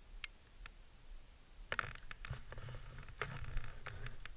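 A skier shifting about in soft snow on a helmet camera: scattered scrapes and crunches, a quick cluster of them about halfway in and a few more near the end, over a low rumble on the microphone.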